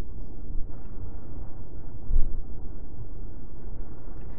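Steady low rumbling background noise, with no speech.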